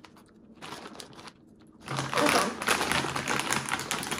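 Kettle corn being crunched and chewed with the mouth close to the microphone, a quick crackly run of crunches that starts about two seconds in and continues.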